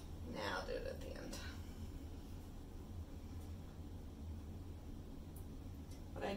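A brief soft murmur of a voice, barely more than a whisper, about half a second in. Under it runs a faint steady low hum.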